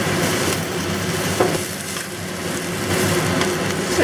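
Chrysanthemum leaves and garlic sizzling steadily in hot oil in a stir-fry pan as Shaoxing wine is poured over them.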